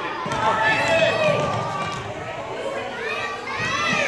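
Voices talking and calling out across a gym, with children running on a hardwood court.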